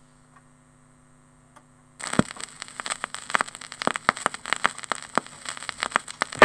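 Faint mains hum, then about two seconds in a vinyl record's surface noise starts suddenly: dense, irregular crackle and pops over hiss from the run-in groove of a 1960s ska single before the music begins.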